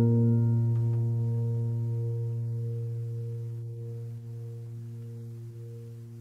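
Background music: a single piano chord ringing out and slowly fading away.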